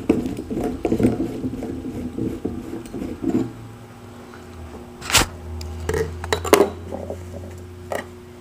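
Antennas being swapped on a mobile radio: rustling handling noise for the first few seconds, then two sharp metallic clinks about five and six and a half seconds in, over a faint steady hum.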